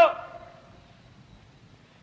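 A man's preaching voice trailing off at the end of a phrase, then a pause of faint background hiss until he speaks again.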